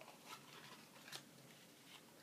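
Near silence with two faint clicks as a small cardboard gift box is handled and opened.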